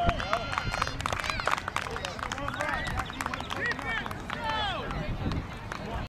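Spectators shouting and cheering at a youth football game, many voices overlapping in excited rising and falling calls, with some clapping.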